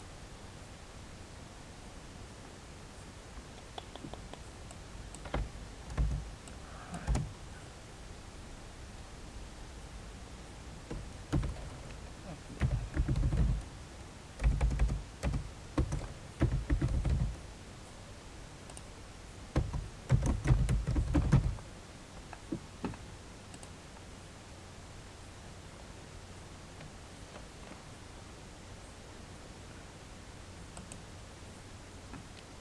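Computer keyboard typing and mouse clicks picked up with dull thumps, in several short bursts.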